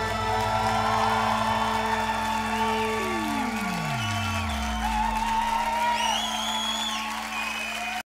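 A live band's closing sustained chord, with a low note sliding steadily down in pitch about three seconds in, while the audience applauds.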